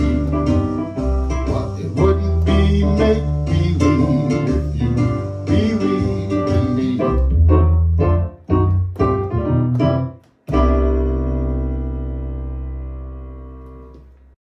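Electronic keyboard playing the instrumental close of a jazz standard over a deep bass line: full playing, then a run of short stabbed chords, a brief break about ten seconds in, and one final chord held and fading out.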